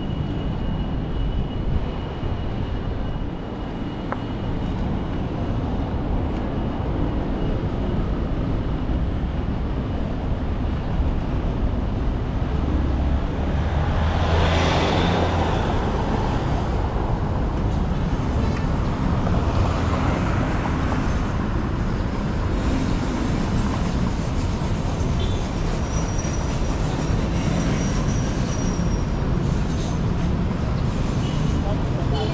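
Street traffic noise: a steady rumble of vehicles on the road, with one car passing close about halfway through.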